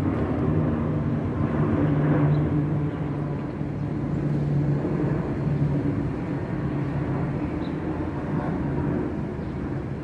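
Twin-engine jet airliner flying overhead, its engines a steady low rumble that fades slightly near the end.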